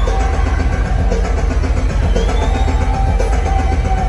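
Loud, steady low droning from a heavy metal band's stage rig at a live show, with thin held tones ringing over it and one rising whistle-like glide about two seconds in. No drum beat yet.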